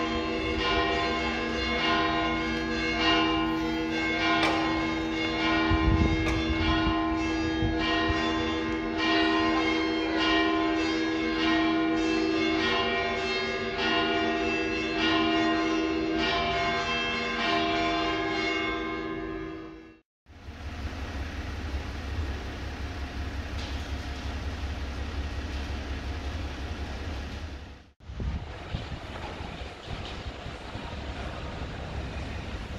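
Church bells pealing, many bells struck over and over in a dense, overlapping ring that stops abruptly about two-thirds of the way through. A steady low rumble follows.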